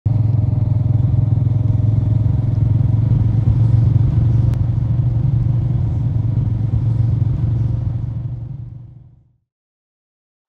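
Motorcycle engine running steadily at cruising speed, a loud low rumble as heard from the saddle, fading out about nine seconds in.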